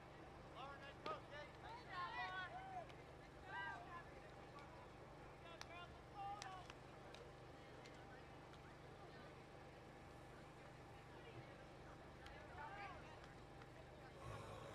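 Faint, distant voices of players calling out across a softball field, in short bursts, over a low steady background hum.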